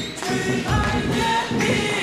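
Sung ritual chanting with music, part of a Taoist troop-summoning rite.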